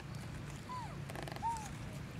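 An infant macaque gives two short, high-pitched calls: the first falls away in pitch and the second, louder one rises and then falls.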